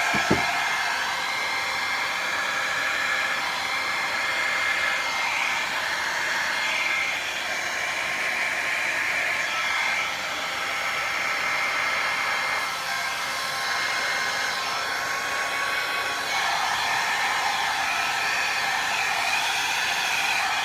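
A mini hair dryer running steadily on its low setting, blowing poured acrylic paint across a canvas; its even rushing air shifts a little in tone around the middle and again a few seconds before the end. A short knock right at the start.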